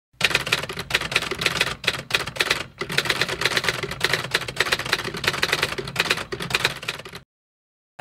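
Typing sound effect: a fast, uneven run of key clicks that cuts off suddenly about seven seconds in.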